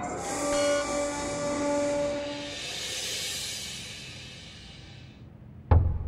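A dramatic background-music sting: a long hissing whoosh over held synth tones, fading away over about five seconds. Low heavy drum hits start just before the end.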